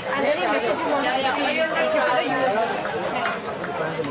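People talking: overlapping chatter of several voices.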